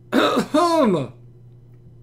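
A man clearing his throat once, about a second long: a rough rasp followed by a short voiced sound that falls in pitch.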